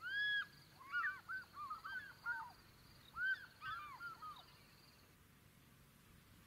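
Birds calling at the water's edge: one loud call right at the start, then two bursts of quick, overlapping calls, each call rising and falling in pitch.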